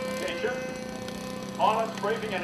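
Indistinct voices talking over a steady hum.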